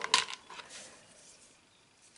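Hard plastic RC car suspension parts picked up and handled over a plastic parts tray: a short burst of light clicks and clatter near the start, then softer handling.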